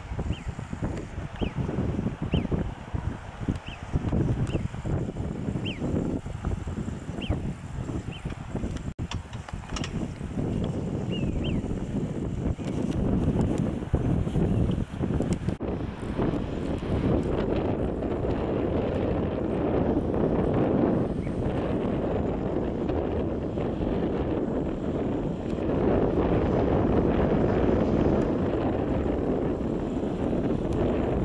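Wind buffeting the camera microphone in uneven gusts, heavier in the second half. In the first ten seconds a series of short high chirps repeats about once a second over the wind.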